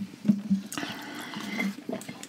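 Close-miked eating and drinking sounds: a slider being chewed and a drink being slurped through a straw, moist and faint, with small clicks and a few soft low hums.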